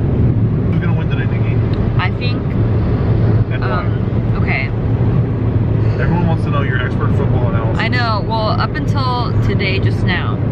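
Steady low rumble of road and engine noise inside a moving car's cabin, with voices talking in snatches over it.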